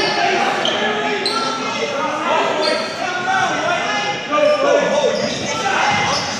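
Indoor basketball game sounds echoing in a large gym: a basketball dribbling on the hardwood floor, short high sneaker squeaks, and players and spectators talking.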